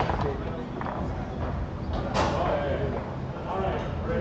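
Foosball table in play: a sharp knock of the ball being struck about two seconds in, with lighter clacks of ball and rods around it, over a background of voices.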